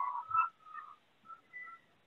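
Quiet whistle-like tones in short, wavering notes that stop and start.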